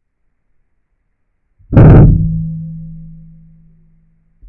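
A single loud deep boom at the air rifle shot, about two seconds in, with a low steady ringing tail that fades away over about two seconds.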